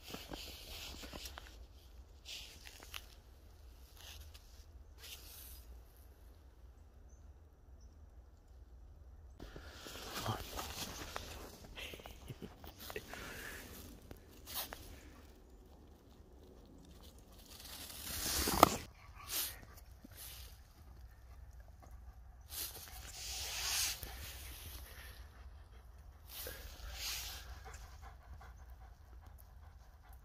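A Doberman's breathing and panting between scattered short noises, with one sharp knock about two thirds of the way in.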